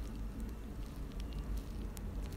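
Faint steady background noise with a low hum and a few faint, small clicks.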